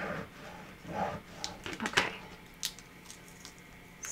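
Plastic scraper rubbing over clear transfer tape on a wooden ornament, a few soft scrubbing strokes burnishing the vinyl down, followed by several sharp clicks and taps near the middle as the tool is handled.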